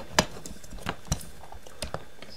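Hard plastic parts of a Transformers Kingdom Voyager Class Inferno action figure clicking as they are unpegged and moved by hand: a few small, sharp clicks spread over two seconds.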